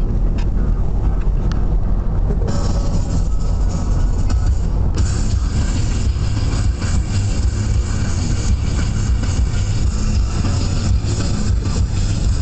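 Road and engine noise of a moving car heard from inside the cabin, a loud steady low rumble. Over it a rushing hiss gets louder in two steps, about two and a half seconds in and again about five seconds in.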